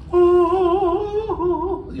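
A man singing a wordless falsetto note with a wide, wavering vibrato. The pitch steps down a little about two-thirds of the way through, and the note breaks off just before the end.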